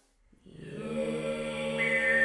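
A woman singing a low Strohbass (vocal-fry 'straw bass') drone, a rough sub-register tone thick with overtones. It begins about half a second in and swells, and near the end a high whistling overtone rings out above it.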